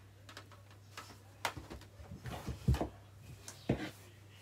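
A few sharp clicks and knocks of small objects being handled, the loudest a little under three seconds in and another near the end.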